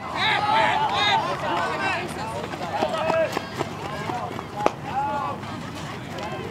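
Several voices of players and spectators shouting and calling out across an open ball field, loudest in the first second. A couple of short sharp knocks cut through, the clearest a little past halfway.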